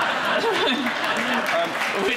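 Studio audience applauding and laughing, with a man's voice speaking over it.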